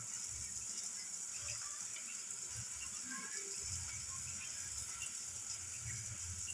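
Eggs frying in tomato-onion masala in a pan, a soft sizzle with faint scattered crackles over a steady hiss. A low hum comes and goes underneath.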